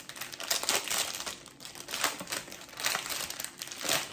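Thin clear plastic packaging crinkling as hands handle it and pull it open, with many quick, irregular crackles.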